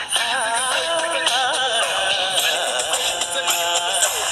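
Recorded dance song: a sung melody that bends and wavers in pitch over steady instrumental backing.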